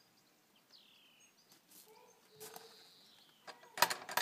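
Faint bird calls, then near the end a quick series of sharp knocks as a brass knocker is rapped on a small round wooden door.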